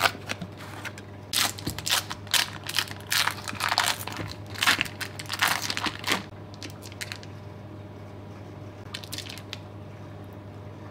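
A paper carton of cheese being opened and the foil wrapper around the block of cheese crinkling as it is peeled back: rustles and crinkles in quick bursts for about five seconds, then a few faint ones near the end.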